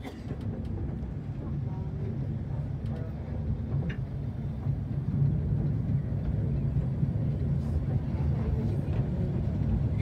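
Passenger train running slowly, heard from an open carriage: a steady low rumble of the wheels and coach on the track, growing a little louder, with a few faint clicks.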